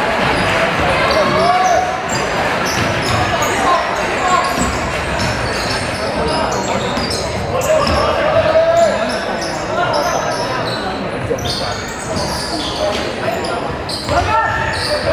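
Basketball being dribbled on a wooden gym floor amid many short, high sneaker squeaks, over steady crowd chatter echoing in a large hall.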